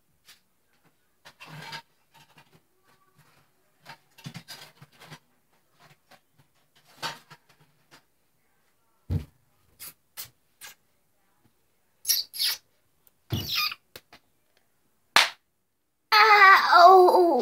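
Scattered off-camera handling noises: brief rustles, a few clicks, and a sharper knock about nine seconds in, with louder rustling bursts near the end.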